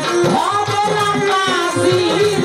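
A woman singing a Bengali pala gaan folk song into a microphone, her melody held and gliding, over a steady hand-drum beat with jingling percussion.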